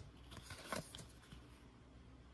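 Faint, brief swishes of cardboard trading cards sliding against each other as they are shuffled through a small stack in the hands, a few in the first second.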